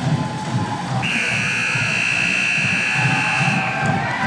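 Electronic match buzzer sounding one long, steady high tone: it starts about a second in and lasts about three seconds, over arena crowd noise. It is the signal that the three-minute robot match has ended.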